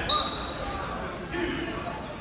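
Indistinct voices of spectators echoing in a gymnasium, opened by a sudden sound with a brief high steady tone at the very start.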